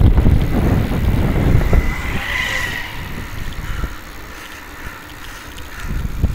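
Wind rumbling on the microphone while riding a bicycle, with a vehicle passing about two seconds in as a brief swelling and fading whine and hiss.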